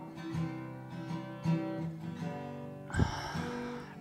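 Acoustic guitar played live, soft single notes plucked now and then and left ringing. A brief rush of noise with a low thump comes about three seconds in.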